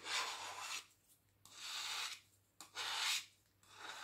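Three short rubbing strokes, each under a second and spread about a second apart, from a nitrile-gloved hand rubbing.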